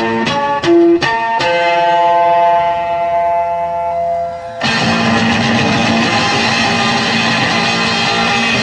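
Electric guitar played alone: a quick run of single picked notes, then a chord left ringing for about three seconds. Louder, distorted playing then cuts in suddenly, about four and a half seconds in.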